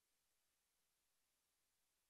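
Near silence: only a faint steady hiss from the recording chain, no audible room sound.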